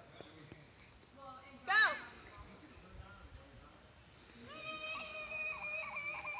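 Mostly quiet, with a person's short call about two seconds in, then a long, held, high-pitched vocal sound from near the end, broken by brief pauses.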